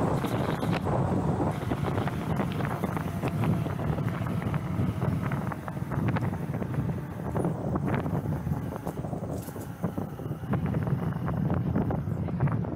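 Wind buffeting the microphone of a helmet-mounted camera on a moving e-bike: a steady low rumble with scattered small clicks.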